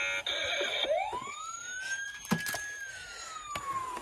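Electronic siren sound from a toy police truck: a short buzzy tone, then one slow wail that rises for about a second, holds briefly and falls slowly. A few sharp clicks sound over it.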